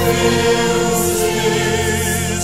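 Praise-and-worship music: a choir singing long held notes over sustained chords.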